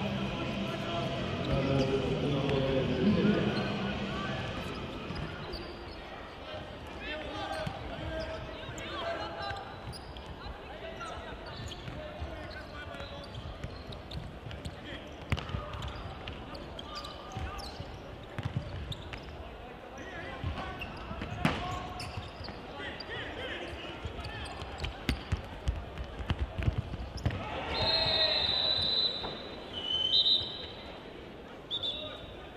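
A football being kicked and bouncing on a sports-hall floor, sharp irregular knocks, over indistinct voices of players and spectators echoing in a large hall.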